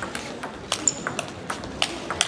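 Table tennis rally: the celluloid ball clicking off the players' rubber-covered bats and bouncing on the table, a string of sharp irregular ticks, with a brief high squeak about a second in.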